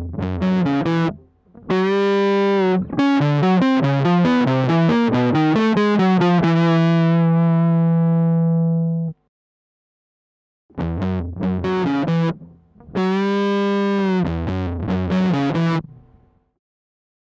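Electric guitar played through a Dophix Nettuno fuzz pedal, built on silicon 2N5088 transistors, giving a thick fuzzed tone. A riff is followed by a long held note whose treble dies away while the tone knob is turned, then the riff starts again after a pause of about a second and a half.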